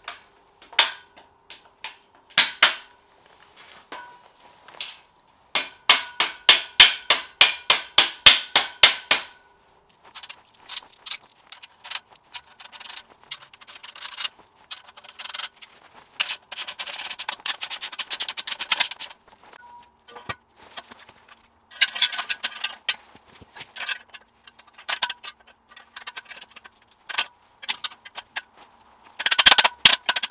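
Series of metallic clinks and knocks as bolted steel clamp plates and threaded rods are fitted onto the square steel tube of a motorcycle frame jig, with a quick run of about six sharp clicks a second in the middle and a loud cluster of knocks near the end.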